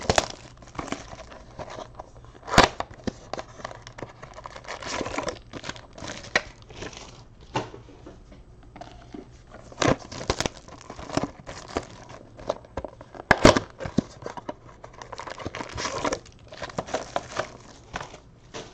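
Clear plastic shrink-wrap crinkling and tearing as it is pulled off a cardboard box of trading cards, with the box and its packs handled. A few sharp knocks stand out, the loudest about two and a half seconds in and again about thirteen and a half seconds in.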